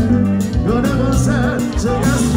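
Live kompa band playing: a male lead vocal comes in about half a second in over electric guitars, keyboard and a drum kit.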